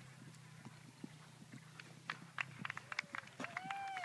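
Hoofbeats of a horse galloping across grass, heard as irregular sharp beats from about halfway through. A low steady hum fades out at about the same time, and a short raised voice calls out near the end.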